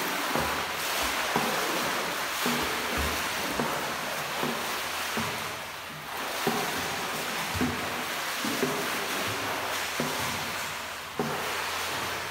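Pool water splashing and churning under a swimmer's arm strokes: a steady wash of splashing with louder splashes about once a second.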